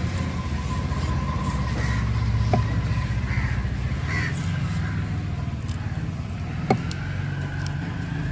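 A heavy cleaver chopping through fish steaks onto a wooden log block: two sharp chops, the louder one near the end, over a steady low hum.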